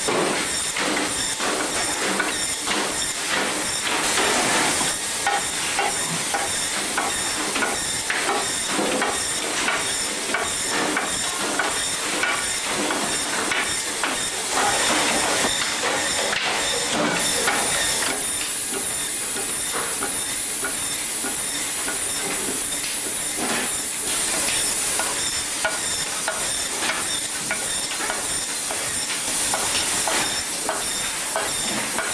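Braher Medoc band saw running and cutting through fish: a steady hiss of the blade with many clicks and knocks. A high, steady whine joins a little over halfway through.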